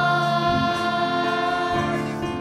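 Youth choir singing gospel music, holding a long chord that changes shortly before the end.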